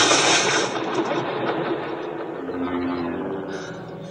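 Lightsaber sound effects: a loud, sharp burst of a blade strike, then a rumbling, buzzing hum that fades over the next few seconds.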